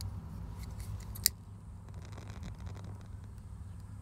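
A pocket lighter struck once with a single sharp click about a second in, lighting it to shrink heat-shrink tubing over spliced car wiring, against a steady low background rumble.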